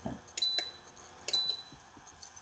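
Two short, high-pitched dings about a second apart, each starting with a click and ringing briefly on one tone.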